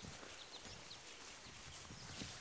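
Quiet outdoor ambience: a few faint, short, high bird chirps and soft footsteps on a grassy dirt path.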